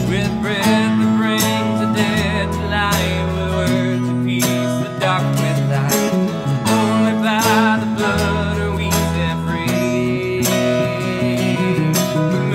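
Worship band playing a slow song: a man singing over strummed acoustic guitar, with electric bass and keyboard underneath. Bass notes change every couple of seconds.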